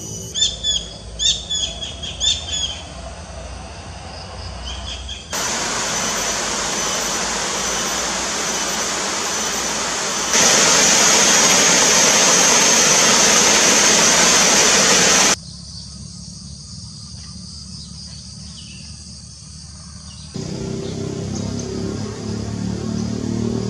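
A small bird calling in a quick run of short, falling chirps for the first few seconds. The sound then cuts abruptly to the steady rush of a flowing river, loudest in the middle. Near the end it cuts again to a quieter outdoor bed with faint bird calls.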